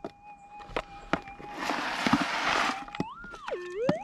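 Metal detector humming a steady threshold tone while a hand rummages through gravel and gold specimens in a plastic gold pan, with a louder scraping rustle about halfway through. A few seconds in, a tone starts swooping up and down in pitch.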